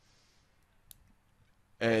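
Near silence with a single faint click about a second in, then a man's voice starts with an "uh" near the end.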